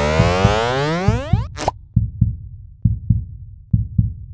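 Dramatic cartoon sound design: a falling sweep of many tones that cuts off about a second and a half in, then a short hiss, then low thuds in pairs like a heartbeat, about one pair a second.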